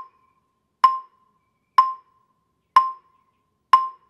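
Mallet keyboard instrument with rosewood bars struck four times with yarn mallets, about one stroke a second on the same high note, each ringing briefly. These are full strokes, played for the rich, full, dark tone the technique aims for.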